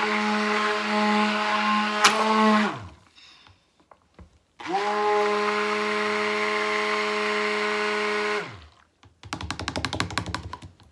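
Stick blender running in a plastic cup of cold process soap batter in two bursts, the first of about two and a half seconds and the second of about four, each winding down with a falling pitch when switched off. A sharp click comes about two seconds in, and near the end there is a quick run of light knocks.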